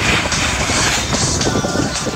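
Music with a steady beat over a loud rushing rumble: a snowboard sliding fast on groomed snow, with wind on the microphone.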